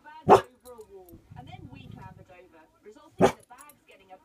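Collie-cross dog giving two short, loud woofs about three seconds apart, with low growling between them, at a deer it has spotted outside the window.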